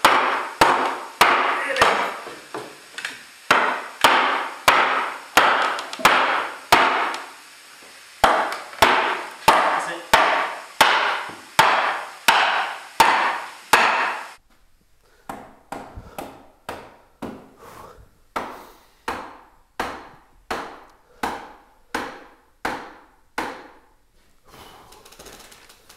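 Repeated hammer blows on the wooden steam-bending jig holding a freshly steamed oak board, about two strikes a second with a short pause about seven seconds in. The blows are quieter in the second half.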